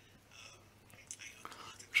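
Faint, soft speech in the background, close to a whisper.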